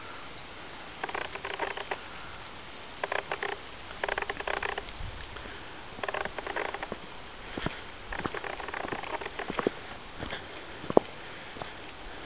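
Irregular footsteps and scuffs in short clusters over a faint steady hiss, with one sharp click near the end.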